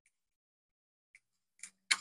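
Mostly quiet, then two small plastic clicks near the end as the locking tab of the AC-input wire connector on an EcoFlow River power station's circuit board is pressed and the connector pulls free.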